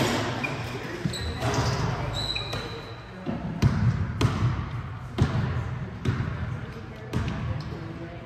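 A basketball being dribbled on a hardwood gym floor, bouncing about once a second in the second half, each bounce echoing around the hall, over background chatter from players and spectators.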